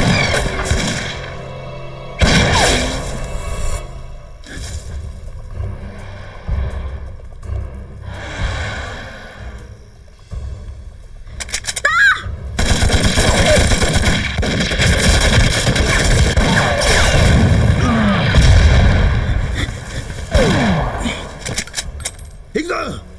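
Film battle audio: a few sharp shots early on, then a woman's shout to fire about halfway through, followed by several seconds of heavy, dense gunfire with rifles and machine guns, over a dramatic music score.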